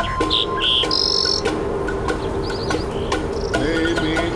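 Relaxation music: a Native American flute holds one long low note and slides up in pitch near the end. Short, high bird-like chirps sound over it in the first second or so.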